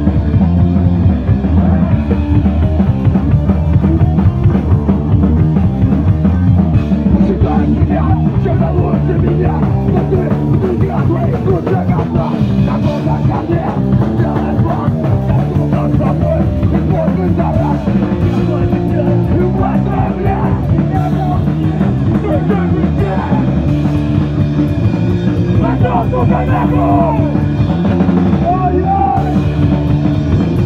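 Punk rock band playing live at full volume, with a steady drum beat under the band.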